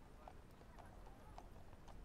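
Near silence: faint room tone with a few soft, irregularly spaced ticks.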